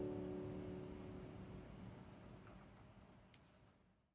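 The song's final piano chord ringing out and slowly dying away to silence, with a faint click near the end.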